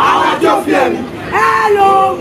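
A group of children shouting a marching chant together: a quick run of shouted words, then a long drawn-out call from about the middle.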